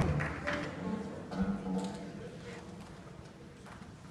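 A guitar quartet playing softly in a hall, the last few spoken words and room noise fading away in the first two seconds.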